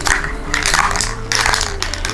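Aerosol graffiti spray-paint can hissing in several short bursts as green paint is sprayed, over background music.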